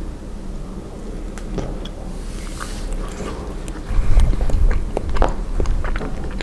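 Close-miked chewing of a soft mouthful of strawberry ice cream bar, with many small wet mouth clicks, growing louder and heavier about four seconds in.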